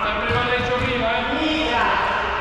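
Men's voices calling out in a reverberant sports hall, with three low thuds about a third of a second apart in the first second.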